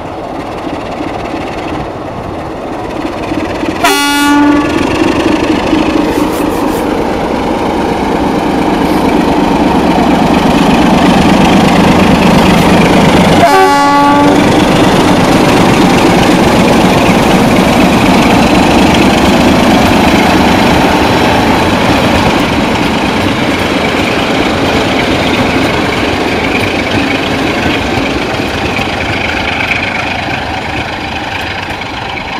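A diesel locomotive hauling a passenger train approaches and passes close by, its engine and wheels rumbling louder until the middle and then easing. It gives two short horn blasts, about 4 seconds in and again about 13 seconds in.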